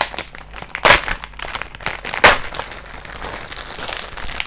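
Clear plastic wrapping crinkling and crackling as it is pulled off a comic book, with two louder crackles about a second in and a little after two seconds.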